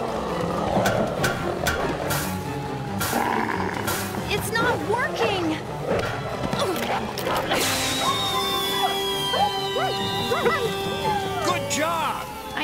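Dramatic cartoon music score with wolves snarling and several sharp hits. About seven and a half seconds in, a road flare is struck and flares up with a hiss, followed by a long falling high tone.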